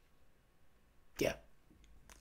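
Faint room tone, then a man's single short, abrupt spoken "yeah" just over a second in.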